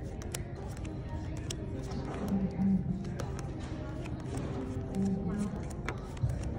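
Playing cards dealt one at a time onto a table, each landing with a light tap, over background music and nearby chatter.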